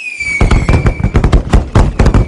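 Fireworks sound effect: a whistle that glides slightly down in pitch, then a rapid, loud crackle of many pops and thumps.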